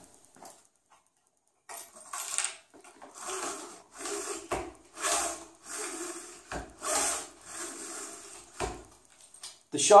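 Trolling motor cable lift being worked by hand: paracord running through small pulleys as the motor is raised and lowered on its bracket. This gives a series of rubbing, swishing strokes, roughly one a second, starting about two seconds in, with a few low knocks between them.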